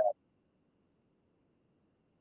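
The end of a spoken word, then near silence: the audio drops out, the microphone cutting out.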